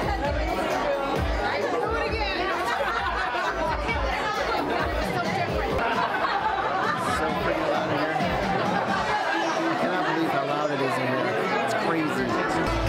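Many people chattering at once in a packed bar, with music playing over the speakers underneath.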